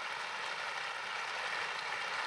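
Steady hiss of background noise, even and unbroken, with no voice in it.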